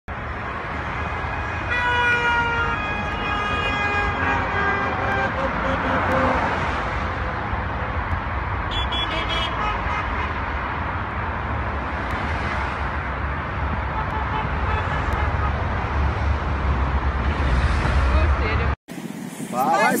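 Road traffic passing on a wide city street, with a steady low rumble. About two seconds in, a long car horn blast falls slightly in pitch, and near the nine-second mark comes a quick run of short high beeps. The traffic sound cuts off abruptly shortly before the end.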